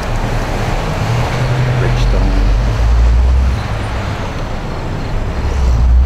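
Road traffic passing: a steady rush of tyre and engine noise with a deep rumble that swells about halfway through and again near the end.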